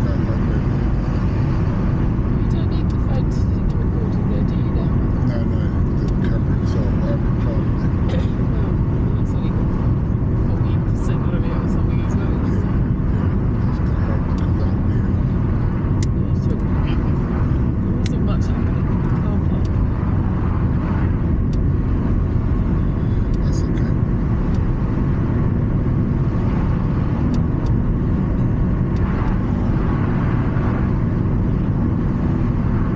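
Steady road and engine noise heard inside a car's cabin while driving, a constant low rumble with a few faint ticks and rattles over it.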